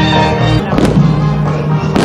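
Festive music playing, with fireworks bursting over it: a crackling volley just under a second in and another bang near the end.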